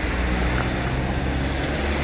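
Steady low rumble of road traffic, with no sudden events.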